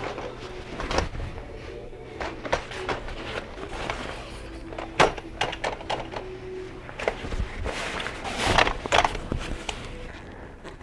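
A blower door's nylon panel and frame being fitted into a doorway: fabric rustling with scattered knocks and clicks, the sharpest knock about halfway through and a longer rustle near the end.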